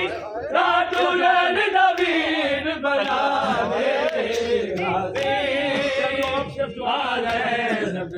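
A group of men chanting a noha, a mourning lament, together in several overlapping voices. A few sharp slaps come through now and then: hands striking bare chests in matam.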